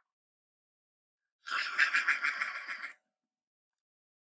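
A raspy, gobbling mouth noise made by a woman's voice, lasting about a second and a half from about a second and a half in: a chomping sound effect for piranhas devouring a fruit platter.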